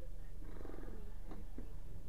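Vehicle engine idling with a steady, fast-pulsing rumble while the vehicle waits at a traffic light. About half a second in there is a short, louder stretch of the pulsing.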